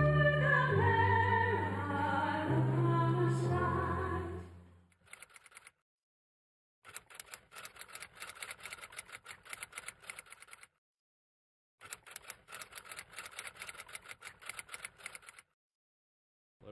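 The closing notes of the national anthem, sung, fading out about four and a half seconds in. After a short silence come two runs of rapid typewriter-style clicking, each about four seconds long with a second of silence between: a typing sound effect under text being typed out.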